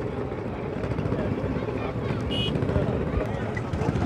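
Outdoor ambience of a crowded open-air car market: a steady rumble of wind buffeting the microphone over indistinct background voices. A brief high-pitched tone sounds a little over two seconds in.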